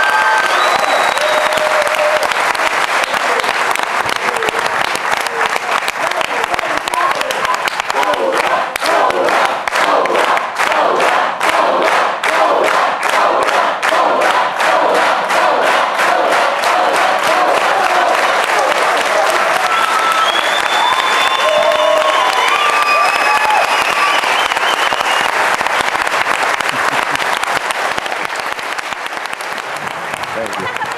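Studio audience applauding and cheering, the clapping falling into a rhythmic beat in unison in the middle, with voices calling out over it; the applause eases off slightly near the end.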